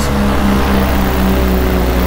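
Paramotor engine and propeller running in flight: a steady drone that pulses several times a second over a low rumble.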